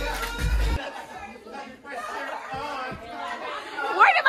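Party music with a heavy bass beat that cuts off abruptly less than a second in, leaving a room of people chattering and talking.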